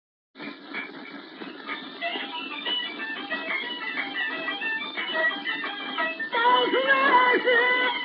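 Beijing opera music from an old record transfer, thin and narrow-sounding, starting about half a second in: a melody with scattered percussion strokes, turning louder with a wavering, vibrato-laden line a little after six seconds.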